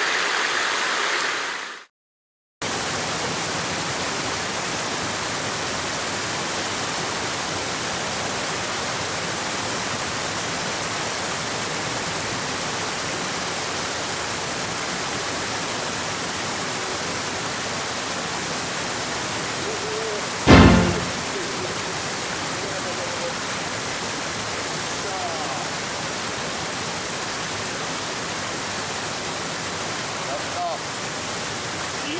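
Shallow mountain-stream water running, cut off short about two seconds in, then the steady rush of water pouring over a low weir. A single loud thump about twenty seconds in.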